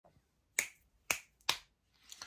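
Three sharp finger snaps, spaced about half a second apart.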